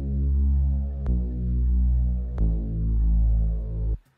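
Logic Pro's Retro Synth 'Analog Mono Lead' patch, a retro analog-style synth lead, playing solo: three held notes, changing about a second in and again about halfway through, then stopping abruptly.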